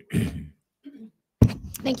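A person clearing their throat once, briefly, followed by about a second of silence.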